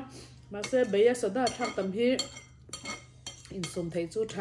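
Metal spoon clinking and scraping against a ceramic bowl of rice porridge, with a cluster of sharp clinks about three seconds in. A woman's voice is heard in the first two seconds.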